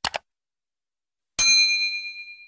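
Subscribe-button animation sound effects: a quick double mouse-click, then about a second and a half in a notification bell ding that rings down.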